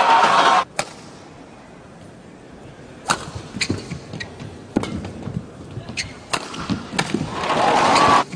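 Badminton rally: sharp racket strikes on the shuttlecock, one every second or so. Arena crowd noise cuts off just under a second in and swells again near the end.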